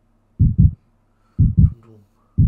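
Heartbeat sound effect: a low double thump, lub-dub, about once a second, over a faint steady low hum.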